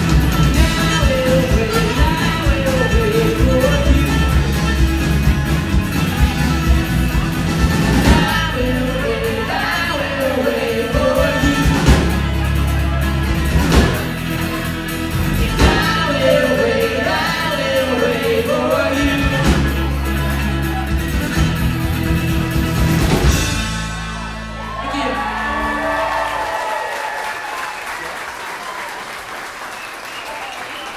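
Live folk-rock band playing the closing section of a song: acoustic guitar, viola, bass and drums under lead and group vocals. The music stops about four-fifths of the way through, and audience applause and cheering follow.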